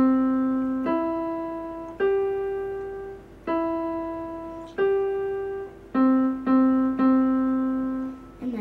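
Electronic keyboard in a piano voice playing a simple beginner melody of single notes, about one a second, each held and fading away. It ends on the same low note struck three times in quick succession.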